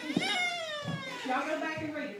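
A woman's voice through a microphone and church PA, high-pitched and drawn out, in two long phrases that each fall in pitch.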